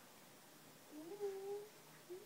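A toddler's short wordless vocal sound, rising in pitch and then held briefly.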